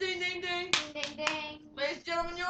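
A child's voice singing long held notes, with three quick sharp claps near the middle.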